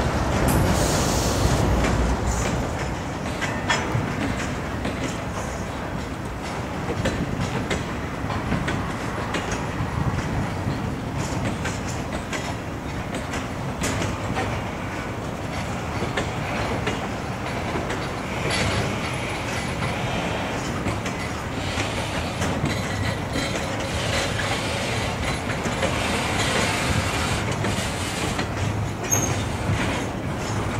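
Double-stack intermodal freight train of well cars rolling past at a steady pace: a continuous rumble of steel wheels on rail with irregular clicking over the rail joints. Some high wheel squeal rises a couple of times in the second half as the cars take the curve.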